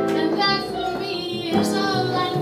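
Live jazz: a female vocalist singing held notes over small-combo accompaniment of piano and double bass.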